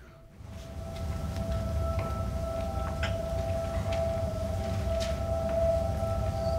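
Opening of a video clip's soundtrack played over a hall's speakers: a low rumble with a steady held tone above it, fading in over the first second.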